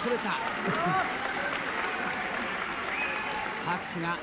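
Arena crowd at a wrestling match applauding steadily, with a few voices rising above the clapping in the first second.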